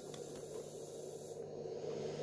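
Quiet room tone: a faint, steady low hum with light hiss.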